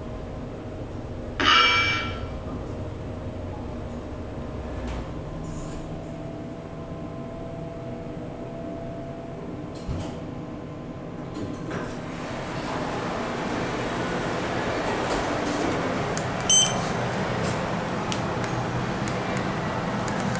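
Schindler 3300 machine-room-less traction elevator: a loud chime about a second and a half in, then a low steady hum while the cab travels. From about twelve seconds, a louder wash of open-lobby noise suggests the doors have opened, and a short high beep comes near the end.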